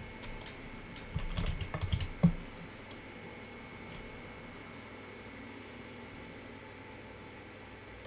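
A short burst of typing on a computer keyboard, starting about a second in and lasting just over a second.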